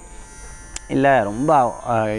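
A man's voice speaking in Tamil resumes about a second in, after a short pause in which only a faint, steady electrical hum and buzz is heard.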